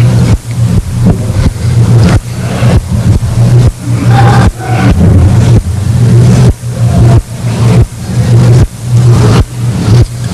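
Loud, steady low electrical hum from the recording chain, choppy and breaking up every fraction of a second, with faint indistinct voices underneath.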